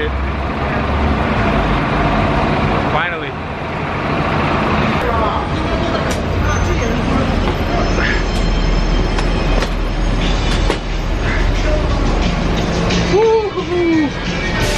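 Steady rumble of vehicles and traffic, with voices in the background.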